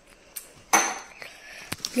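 Hands handling paper and chocolate-bar wrappers: a sharp crackling rustle about three-quarters of a second in, then a few light clicks.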